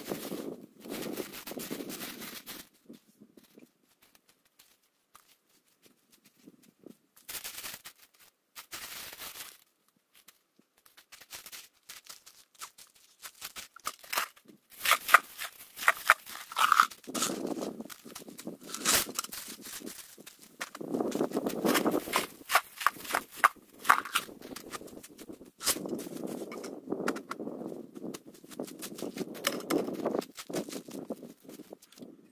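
Loose gravel being spread by hand, the stones crunching and rattling in spells, with a quiet stretch a few seconds in and a run of sharp stone clicks in the middle.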